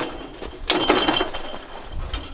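Barbed wire pulled off a braked reel through a barbed wire dispenser's rollers: a ratcheting, grinding mechanical rattle, with a short high squeal about a second in.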